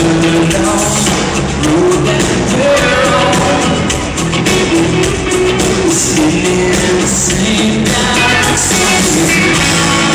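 Live country-rock band performing in an arena, with a male lead vocalist singing over acoustic and electric guitars, bass and drums, heard with the echo of the arena.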